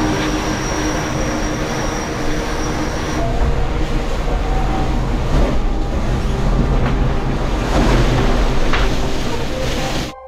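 Loud, steady rumbling and rushing inside the carbon cabin of an IMOCA racing yacht sailing fast in strong wind, the hull's noise carried through the whole boat. A thin high whine runs over it for the first few seconds, and the noise cuts off suddenly at the end.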